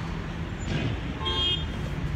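Road traffic noise: a steady low rumble of passing cars, with a brief faint pitched sound about a second and a half in.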